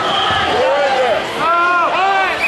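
Spectators and coaches shouting and calling out over a wrestling bout, one voice rising and falling in a long high yell near the end. A dull thump, as of a body hitting the mat, sounds about half a second in.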